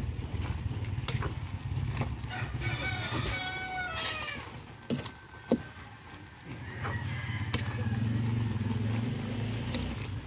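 A rooster crows once, about three seconds in. Around it, a metal ladle clinks and scrapes against a large aluminium wok as noodles are tossed, and a low steady hum builds over the last few seconds.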